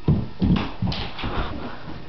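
A person jumping down from a counter and landing on a wooden floor: a heavy thud right at the start, then several more bumps and scuffles as she falls and sprawls out.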